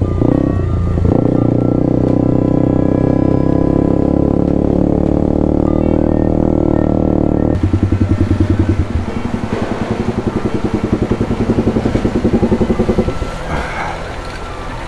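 Kawasaki KLX250S single-cylinder four-stroke engine running steadily under way, then settling at about seven seconds into a lumpy, pulsing idle as the bike stops. The engine sound falls away near the end.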